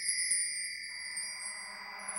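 A bright chime shimmer: several high tones ring together and slowly fade.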